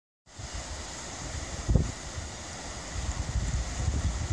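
Wind buffeting the microphone over sea surf breaking on rocks: a steady hiss with uneven low gusts, the strongest about one and a half seconds in.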